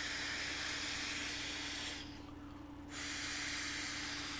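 A person blowing up an inflatable beach ball by mouth: two long breaths of air blown into the valve, with a short pause about two seconds in to draw breath.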